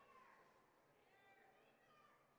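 Near silence: faint background of the arena's room tone.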